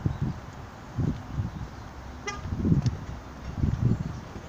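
Outdoor wind buffeting the microphone in uneven low gusts, with one short car-horn toot a little over two seconds in.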